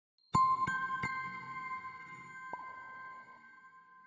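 Chime-like logo sting: three quick bell-like notes in the first second and a softer fourth note a little later, each ringing on and slowly fading away.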